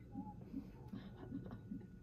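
Fetal heart monitor's Doppler speaker playing the unborn baby's heartbeat as a faint, rhythmic swishing, several soft pulses a second.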